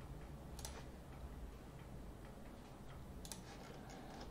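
Two faint computer mouse clicks, about half a second in and near the end, over a low steady hum of room tone.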